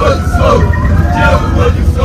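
Bus engine and road noise, a steady low rumble inside the passenger cabin, with the voices of passengers over it.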